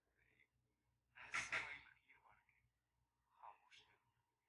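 Faint human vocal sounds against near silence: a breathy exhale or sigh about a second in and a brief murmured sound near the end.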